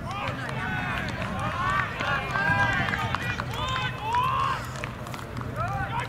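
Several voices shouting and calling across an open football ground, short overlapping calls throughout, over a steady low hum.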